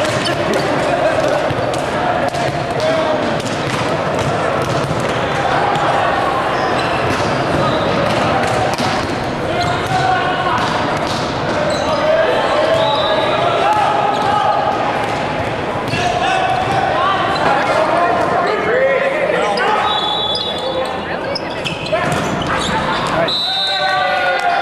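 Indistinct voices of volleyball players calling and talking in a large gym, with repeated sharp smacks of the volleyball being hit and bouncing on the hardwood floor.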